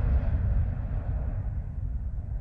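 Low rumbling tail of an intro whoosh sound effect, slowly fading away.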